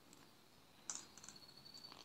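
Faint clicks of faceted glass crystal beads knocking together as clear beading line is drawn through them, with a thin high squeak of the line sliding through a bead for about a second, starting about a second in.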